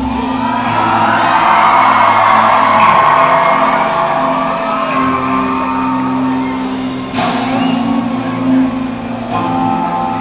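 Live rock band ending a song in a large hall. The drums drop out at the start, leaving electric guitars ringing out on held chords, with another chord hit about seven seconds in, while the crowd shouts and cheers.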